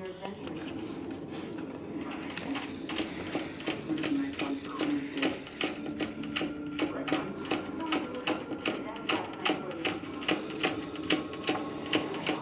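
Chihuahua puppy licking at the metal ball-valve spout of a hanging water bottle: quick, irregular clicking and rattling, several clicks a second, starting about two seconds in. Under it runs a steady low hum from a vacuum cleaner running upstairs.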